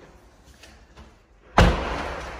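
A sudden loud thump about one and a half seconds in, followed by a rushing noise that fades away slowly.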